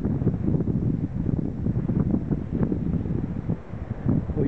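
Wind blowing across the microphone: a low, uneven rushing noise that rises and falls.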